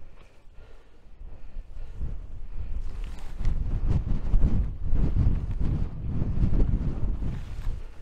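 Strong wind buffeting the microphone on an exposed summit: a low rumble, lighter at first and gusting much harder from about three seconds in.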